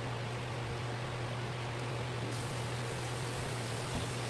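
A steady low hum under an even hiss, unchanging throughout.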